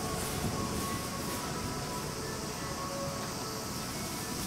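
Steady running of a diesel railcar idling at the station: an even rumble with a few faint steady tones over it.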